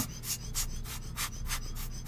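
A mechanical watch movement ticking: fast, even ticks at about six a second.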